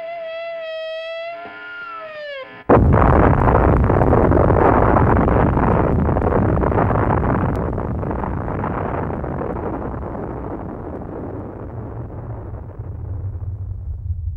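A single held note at the end of a rock song bends down and stops. About two and a half seconds in, a sudden loud explosion comes in, and its rumble dies away slowly over the next ten seconds, leaving a low rumble.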